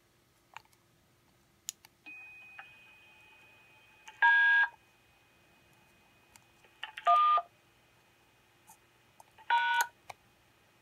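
Three DTMF touch-tone beeps from a TYT radio's keypad microphone, each about half a second, at about four, seven and nine and a half seconds in. Each beep is two tones at once, matching the digits D, 1 and #: a command to the SvxLink node to bring up the EchoLink echo test. A faint steady high tone and hiss sit underneath from about two seconds in, with a few faint clicks before.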